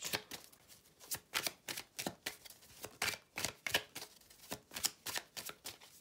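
Tarot cards being shuffled by hand: a quick, irregular run of crisp card flicks and snaps.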